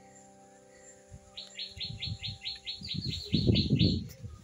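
A bird calling a fast, even series of short identical chirps, about five a second, starting about a second and a half in. Under it are low rustling and knocking sounds, loudest near the end.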